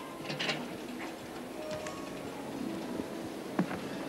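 Faint music over the low murmur of a large arena crowd, with a single short knock near the end.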